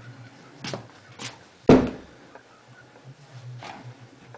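A few short knocks and bumps, the loudest a sharp thump a little before halfway through that dies away quickly.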